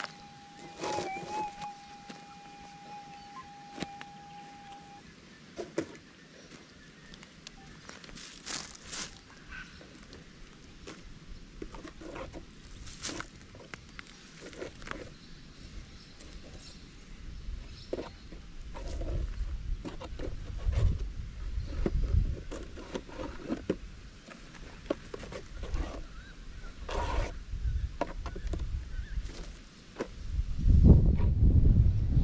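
Minelab GPX 6000 gold detector giving a steady electronic tone that wavers briefly about a second in and stops about five seconds in. Then footsteps and crackling of dry leaf litter and soil as the coil is swept over the dug hole, with low rumbles and thumps growing in the second half.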